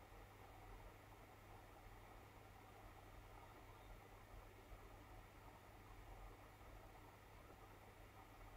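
Near silence: room tone with a faint low steady hum.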